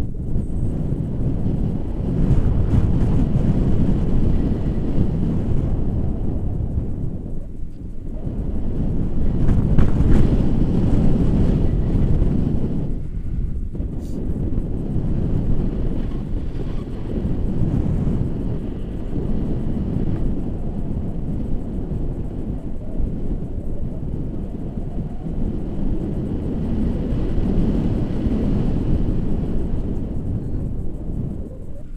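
Air rushing over an action camera's microphone during a tandem paraglider flight: a loud, low rumble that swells and fades in gusts, strongest about ten seconds in, with two brief lulls.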